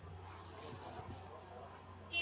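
Faint room tone: a steady low electrical hum under a light hiss.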